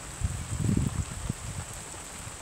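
Steady light rain falling on a garden, a soft even hiss. Low buffeting on the microphone comes in the first second or so.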